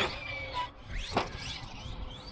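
Losi LST 3XLE RC monster truck's electric motor whining and changing pitch as it is driven hard over a ramp, with a sharp knock right at the start. About a second in there is a quick dip and rise in the whine.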